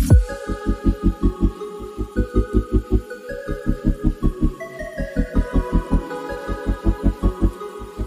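Background music: an electronic track with a fast, even bass beat under sustained synth notes that shift in steps.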